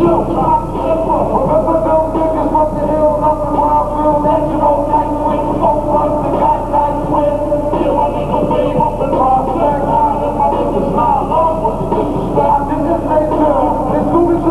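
Live hip-hop performance played loud through a stage PA: a backing track with a rapper's vocal over it, heard muffled, with little treble.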